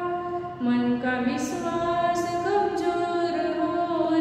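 A woman singing an assembly prayer unaccompanied, in long held notes that step between pitches, with a short break for breath about half a second in.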